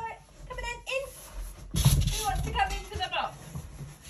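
Short wordless voices, exclamations and squeals from an adult and a child, in two bursts. A sudden thump comes just before the second burst, about two seconds in.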